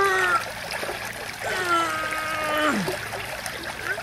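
A man's wordless straining vocal sounds, a short held one at the start and a longer one from about a second and a half in that drops away in pitch at its end, over the steady trickle of a small stream.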